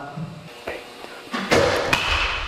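A DeMarini The Goods 32-inch BBCOR bat hitting a baseball about one and a half seconds in: one sharp crack with a short echo after it. The ball is caught off the end of the barrel, with basically no ring.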